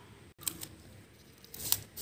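A few short, crisp handling sounds of newspaper and a thin kite stick being pressed onto a concrete floor, the loudest about three-quarters of the way through.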